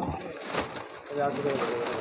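Indistinct background voices at a busy food stall, with brown paper and a plastic bag rustling as parathas are wrapped and bagged.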